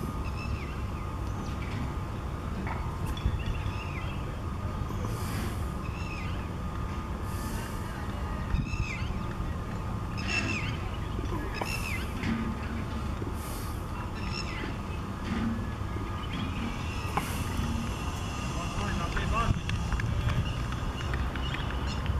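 Open-air ground ambience: a steady low rumble like wind or distant traffic, with short high chirps dotted through the first half and faint distant voices.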